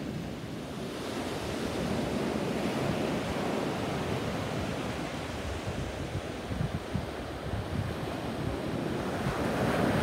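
Small sea waves breaking and washing up a sandy beach in a steady surf, swelling again near the end, with wind buffeting the microphone.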